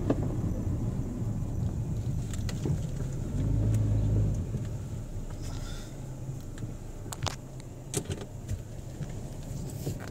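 Car driving slowly, heard from inside the cabin: a steady low engine and road rumble that swells louder for a moment about three and a half seconds in. A few light clicks or knocks come in the second half.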